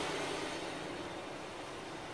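Low, steady background hiss of room noise with no distinct handling clicks or knocks.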